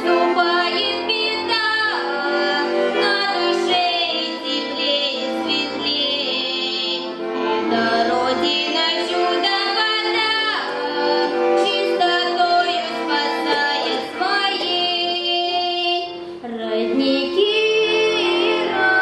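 A girl singing a song solo into a microphone over instrumental accompaniment.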